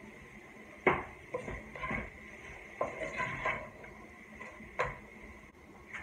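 Kitchenware being handled: a sharp knock about a second in, then a string of lighter clinks and knocks. This is a plastic salt shaker being set down and a glass bowl of stock being handled on its plate.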